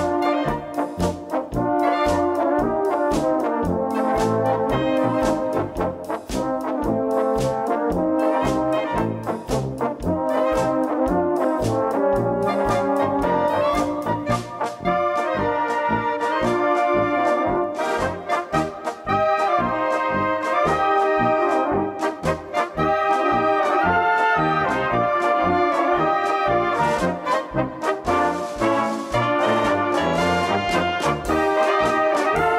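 Brass band playing an instrumental passage: tubas and trumpets carry the melody over a drum kit that keeps a steady beat.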